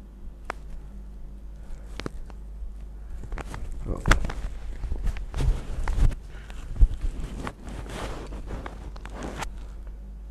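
Terry-cloth towel rubbing over wet hair in irregular strokes, with rustling and a few sharp knocks where the towel brushes against the microphone, the loudest around four seconds in and again just before seven seconds.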